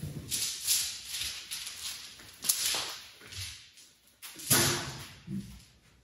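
Hands rummaging through objects on a shelf and in plastic crates: irregular rustling and scraping with a few knocks, the loudest clatter a little past four seconds in.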